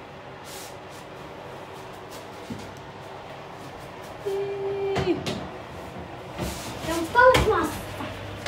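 Oven door opened and a baking sheet slid onto the metal oven rack: a few sharp clicks and clunks in the second half, the loudest shortly before the end.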